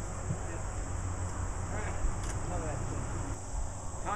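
Steady high insect drone over a low outdoor rumble, with a single faint knock about two seconds in.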